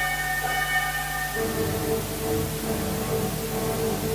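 Symphony orchestra playing: held high notes thin out, and about a second and a half in a lower sustained chord enters and is held.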